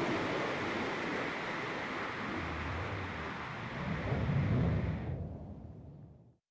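New Shepard booster's BE-3 rocket engine firing as the booster settles onto the landing pad: a steady rushing rumble that swells deeper about four seconds in, then cuts off about five seconds in and dies away. It is heard as the playback audio of a shared video.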